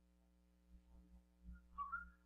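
Near silence, then a person starts whistling near the end: a few clear notes stepping up in pitch.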